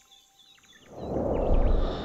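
Faint bird chirps of a background soundscape, then a whooshing transition sound effect swells up about a second in, loudest just after halfway, and starts to fade.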